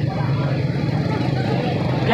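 A steady low engine hum with street background noise.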